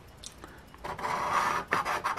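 Scratch-off lottery ticket being scratched: the coating is scraped off its card in a steady rasp starting about a second in, then in quick short strokes near the end.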